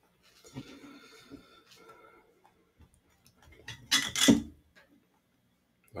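Soft crackling and rustling of a baked sweet bun being torn apart by hand. About four seconds in come two short, loud, breathy bursts.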